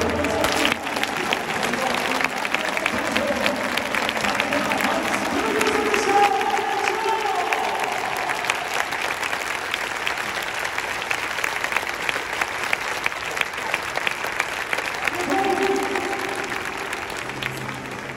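Stadium crowd clapping steadily, with a voice heard briefly twice over it.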